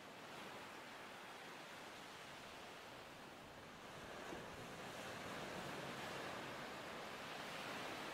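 Faint, steady wash of sea surf with some wind, growing a little louder about halfway through.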